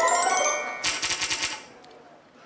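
Game-show answer-board sound effect: a bright, ringing chime, then about a second in a rapid run of sharp clicks as the seven answer slots come up on the board.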